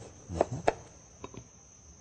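Kitchen knife cutting the stalk off an eggplant on a cutting board: a few short knocks of the blade and vegetable on the board, over a steady high trill of insects.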